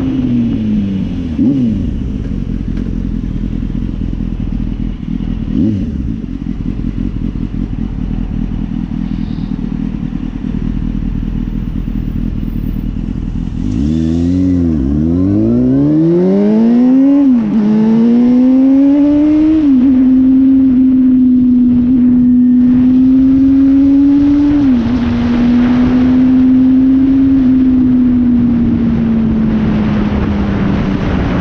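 Motorcycle engine heard from a helmet-mounted camera, with road and wind noise. The revs fall as the bike slows, then the engine stays low for several seconds. About halfway through it pulls away, revs rising and dropping back with each upshift through the gears, then settles into a steady cruise.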